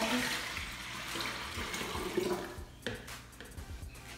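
Water pouring in a steady stream from a plastic measuring jug into a glass jug, dying away about three seconds in.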